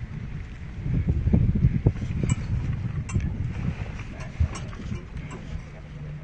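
Pontoon boat's outboard motor running at low speed, a steady low hum under wind buffeting the microphone; the buffeting swells to its loudest about a second in and eases off after a couple of seconds.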